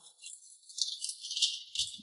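A folded sheet of paper and jacket fabric rustling as the paper is pulled from an inside jacket pocket: a few quick, thin, high crinkling rattles.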